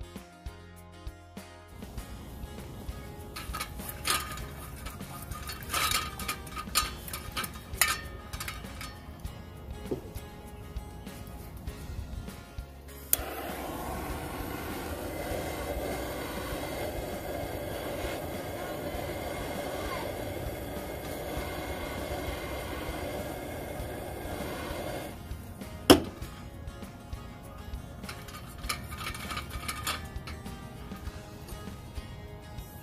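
Brief music, then scattered clicks and metal clinks of handling. A handheld butane torch then lights with a sudden steady hiss that runs for about twelve seconds while it is held to a Coleman gas lantern. The hiss cuts off, followed by one sharp clack.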